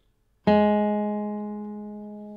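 A single note plucked on the second (B) string of an acoustic guitar about half a second in, ringing and slowly fading. The string is far out of tune, sounding down near G, so low that the tuner app reads it as a G.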